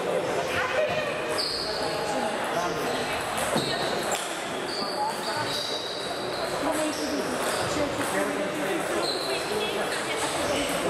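Table tennis rally: the celluloid ball clicking back and forth off bats and table, echoing in a large hall, with voices in the background.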